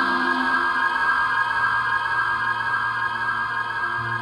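Theremin music: several sustained, slightly wavering high tones layered together over lower held notes. A low steady drone comes in about a second in.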